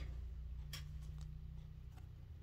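Faint handling of a stack of trading cards, with a couple of soft clicks as one card is slid to the back of the stack, over a low steady hum.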